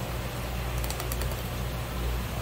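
A short run of light, quick clicks about a second in, as a filleting knife ticks over the fin-ray bones along the edge of a flatfish fillet. A steady low hum runs underneath.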